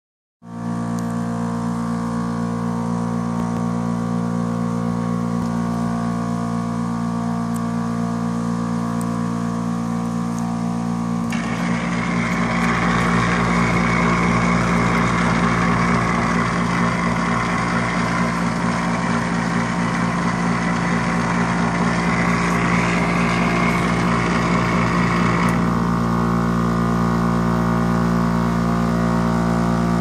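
Dri-Eaz LGR Revolution dehumidifier running with a steady mechanical hum, while it shows an ER6 'contact service center' fault. From about 11 to 25 seconds the sound is louder, with a rushing of air, heard close up at the fan grille.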